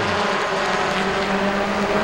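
Engines of a pack of Super Truck race trucks running at speed around the oval, a steady drone that holds one pitch.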